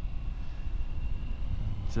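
Triumph Tiger three-cylinder motorcycle cruising steadily: a low rumble of engine and wind on the onboard microphone, with a faint steady high tone above it.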